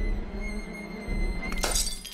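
Horror film score: a tense sustained high drone over a deep low rumble, cut by a sudden sharp crash-like burst about a second and a half in.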